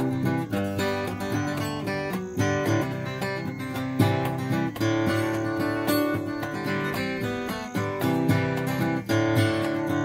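Acoustic guitar strummed in a steady rhythm, playing the instrumental intro of a country song.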